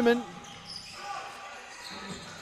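Court sound of a basketball game in play: a basketball bouncing on the hardwood floor, at low level, just after a commentator's voice stops.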